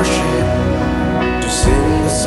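Live worship band music: a woman singing a melody over keyboard and acoustic guitar, with bass and cymbals.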